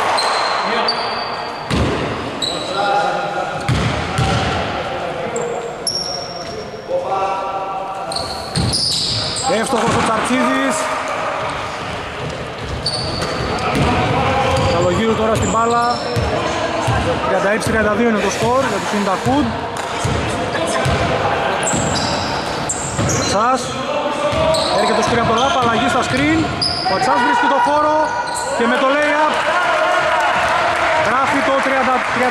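Basketball bouncing on a hardwood gym floor, dribbled repeatedly, with players' voices on court and short high squeaks from shoes on the floor.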